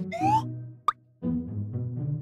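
Edited-in cartoon sound effects over light background music: a short rising whoop right at the start, then a quick pop just before a second in, after which the music tones carry on.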